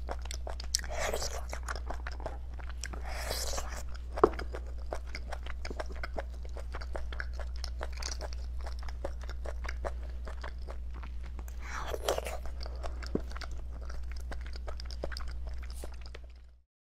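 Close-miked eating of beef bone marrow: wet chewing with many small mouth clicks and smacks, broken by a few longer sucking slurps (about a second in, around three seconds and around twelve seconds). One sharp click a little after four seconds is the loudest sound. A steady low hum runs underneath.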